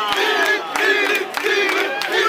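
Crowd of football fans shouting and chanting loudly, many voices at once.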